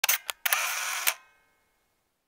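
Camera shutter sound effect: a few quick clicks, then a short whirring wind of about half a second that ends in another click.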